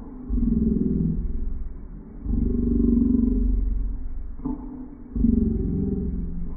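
Deep, growling, voice-like sounds in three long, low-pitched drawn-out bursts, each starting abruptly.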